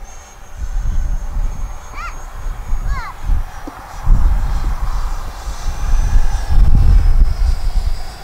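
Thin, steady high whine of a 50 mm electric ducted fan jet flying overhead, under loud gusts of wind on the microphone. Two short chirps come about two and three seconds in.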